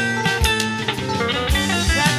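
Blues band playing an instrumental break: an electric guitar lead with bent, sliding notes over a bass line and a steady drum-kit beat.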